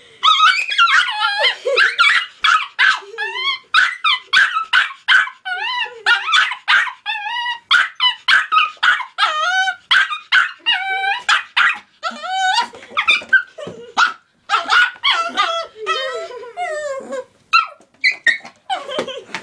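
Small black-and-tan dog barking and yipping over and over in high-pitched, quick calls, about two or three a second with a couple of short breaks, alarmed by a plastic water bottle it takes for a threat.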